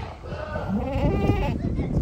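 A young white Sojat goat bleating: one wavering bleat lasting about a second.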